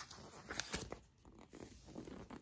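A page of a paperback book being turned by hand: a faint paper rustle with a few soft flicks about halfway through.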